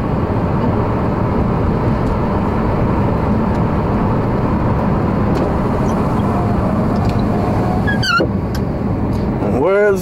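Steady road and engine noise heard from inside a car driving along at speed. A brief falling tone comes about eight seconds in.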